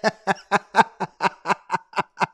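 A man laughing in a steady run of short pulses, about four or five a second.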